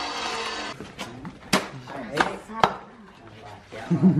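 Three sharp cracks about half a second apart near the middle, from the crisp skin of a whole roast pig being handled and readied for carving with a cleaver.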